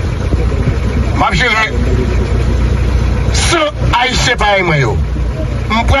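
A man speaking in short, broken phrases over a steady low rumble, with pauses between the phrases.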